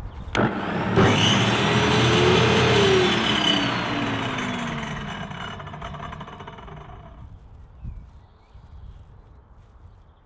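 An electric power-tool motor built into the homemade saw table, switched on with a click and running up to speed. It is then switched off and winds down over a few seconds, its pitch rising and then falling away.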